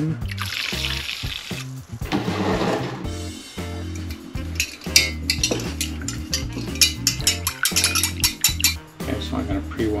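Film developer being stirred in a glass measuring jug: a stirring rod clinks against the glass many times in quick succession through the second half. A hiss of liquid squirting from a syringe into the jug comes twice in the first three seconds. Background music with a steady bass runs throughout.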